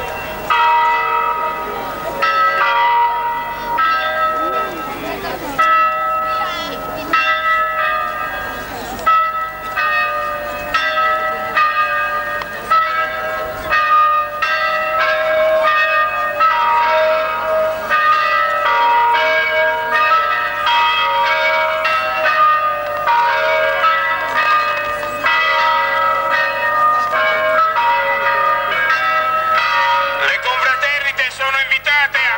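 Church bells ringing continuously, several bells struck in quick succession so that their ringing tones overlap and keep changing. A crowd's voices run underneath.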